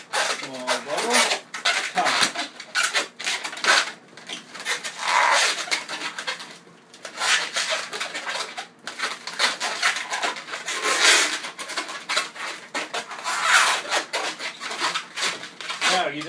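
Inflated 260 latex modelling balloons being twisted into bubbles by hand, the rubber rubbing and squeaking against itself in irregular bursts.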